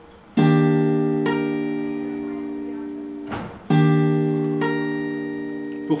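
Acoustic guitar chord fingerpicked twice: a low note is plucked, the higher notes follow about a second later, and the chord is left to ring and fade. There is a brief scrape of string noise just before the second time.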